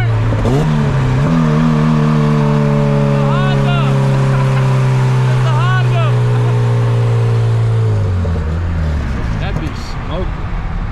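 A car engine revs up briefly near the start, then holds a steady drone that eases slowly lower and drops off about eight seconds in. A voice calls out twice over it.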